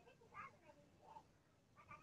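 Near silence, with a few faint, brief voice-like sounds in the background.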